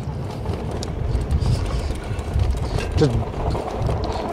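Wind rushing over the microphone and the rumble of the e-bike's tyres rolling over rough grass while riding, a steady low rumble with hiss.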